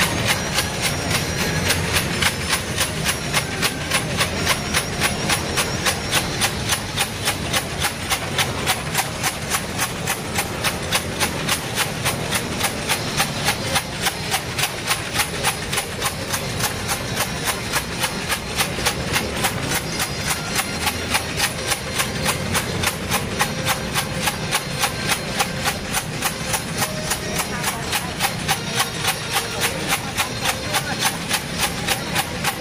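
A steady, even beat of sharp percussion strikes from the procession's percussion, a little over two strikes a second, keeping an unbroken tempo.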